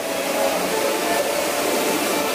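Steady rushing noise.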